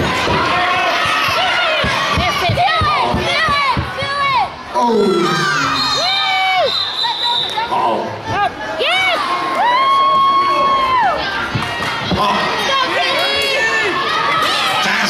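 A bleacher crowd cheering and shouting, full of high-pitched children's shrieks and yells, a few of them held for about a second.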